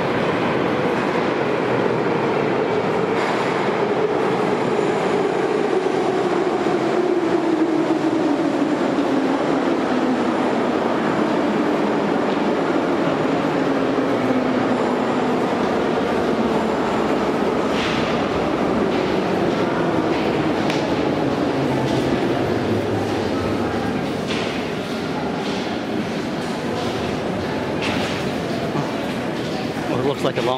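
Moscow Metro train running nearby, a loud steady rumble with a motor note that falls slowly over about ten seconds, as a train slowing down would. A few short clicks sound near the end.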